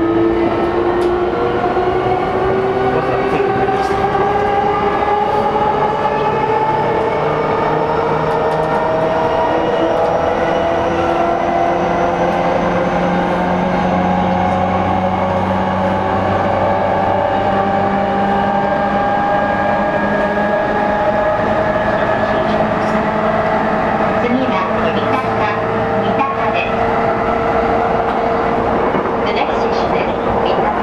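Running sound of a JR East E233-series motor car (MOHA E233) heard on board: the traction motors and inverter whine in several tones that climb slowly as the train gathers speed, over a steady rumble of wheels on rail. A few clicks come near the end.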